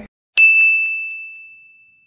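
A single bright bell-like ding sound effect: one sharp strike about a third of a second in, ringing on one high tone and fading away over about a second and a half.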